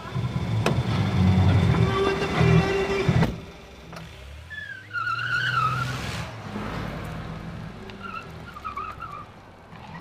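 A minivan's door slams shut about three seconds in, then the van's engine pulls it away, with a brief wavering tyre squeal as it moves off and the engine sound fading.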